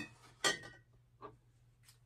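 Glass canning jars clinking on a wooden pantry shelf as one jar is set back and another lifted out. There are two sharp clinks within the first half second, the second ringing briefly, then two faint ticks.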